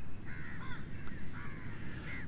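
Crows cawing: a quick series of short, hoarse calls over a low, steady background rumble.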